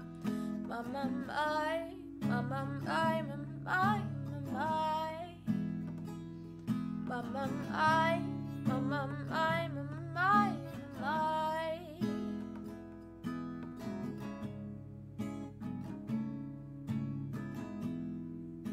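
Acoustic guitar strummed steadily, with a wordless vocal melody of rising, sliding notes over it that stops about twelve seconds in, leaving the guitar alone.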